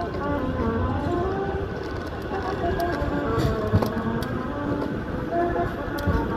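A Manchester Metrolink M5000 light-rail tram running past close by at low speed, a steady low rumble of wheels on street-running rails.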